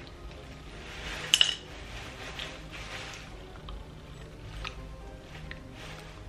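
Quiet background music with small clicks from a mouth-paint applicator being handled at the lips and tongue. The loudest is a sharp click about a second and a half in, followed by a few faint ticks.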